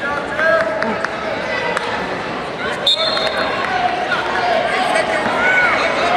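Referee's whistle, one short high blast just under three seconds in, starting the wrestlers from the referee's position. Shouting from coaches and spectators runs throughout.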